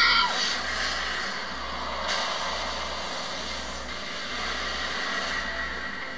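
Movie trailer soundtrack: a sustained rushing noise over a low pulse that beats about once a second, with a short falling tone at the very start.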